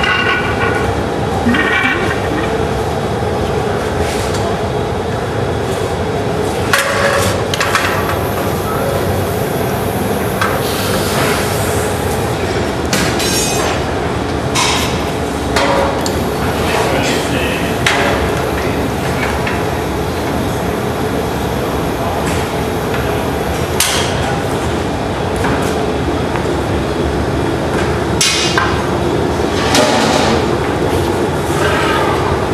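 Steady roar of a glassblowing studio's gas-fired furnaces and burners, broken by scattered sharp knocks and clinks of metal tools.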